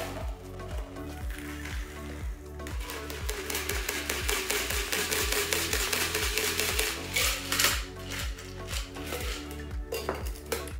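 Background music with a steady beat. Over it, from about three seconds in until about seven and a half seconds, a stream of liquid hisses as a shaken cocktail is poured from a metal shaker tin through a fine mesh strainer into a coupe glass.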